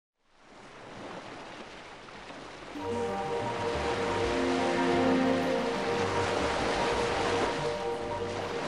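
Ocean waves and surf hiss fading in from silence. About three seconds in, soft background music with long held notes and a low bass line joins it and grows louder.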